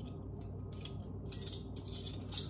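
Measuring spoon scooping and scraping baking soda, a quick run of short scratchy strokes.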